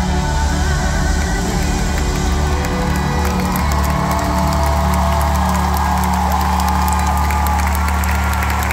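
Live band playing through an arena PA, holding steady low notes of a song's closing chord, while a large crowd cheers over it. The cheering and clapping swell about halfway through.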